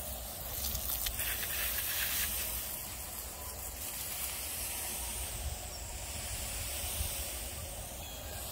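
Garden hose spray head spraying a fine mist of water over a flower bed: a steady hiss.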